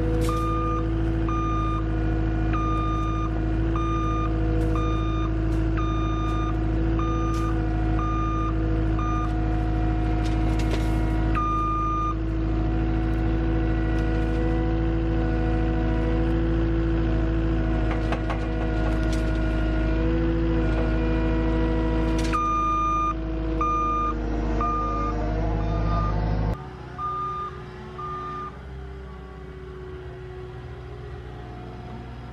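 Cat 259D compact track loader's diesel engine running steadily under load while it works its grapple, with its back-up alarm beeping in runs of regular beeps. Near the end the engine pitch rises and falls, then the sound stops abruptly, leaving a much quieter low hum.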